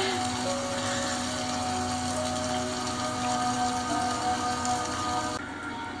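Television episode soundtrack: soft score of long held notes over a steady hiss of rain. The hiss cuts off shortly before the end.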